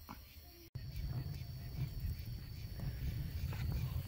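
Wood and scrap fire freshly lit in a steel-cased in-ground barbacoa pit: a steady low rumble that starts abruptly under a second in, after near silence.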